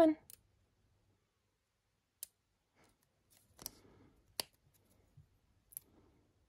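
Tweezers picking at a small sticker to lift it off its backing sheet: a few sharp little clicks with light paper rustle, one about two seconds in, a short cluster with a sharper click around four seconds, and another near the end. The sticker is a stubborn one that will not peel free.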